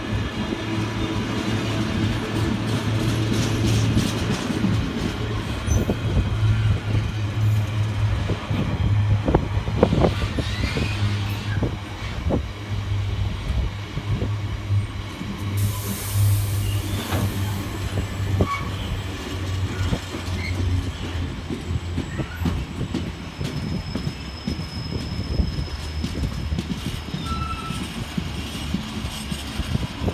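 Intermodal container wagons of a freight train rolling past steadily, their wheels knocking over the rail joints. A low rumble eases off in the second half, and brief faint wheel squeals come through now and then.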